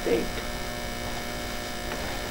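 Steady electrical mains hum in the recording, many fixed tones held without change.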